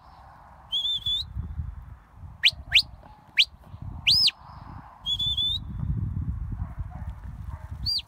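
Sheepdog handler's whistle commands to a working dog: a run of high, clear whistles, including a held note that turns up at the end, three quick rising blips, an up-and-down arched whistle and another held note, with a final arch at the very end.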